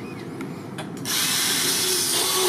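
A robot-mounted power screwdriver starts about a second in and runs steadily and high-pitched, driving a screw up into a ceiling board.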